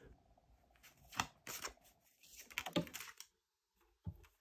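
Tarot cards handled on a tabletop: several light clicks and taps as a card is set down and the next one drawn from the deck.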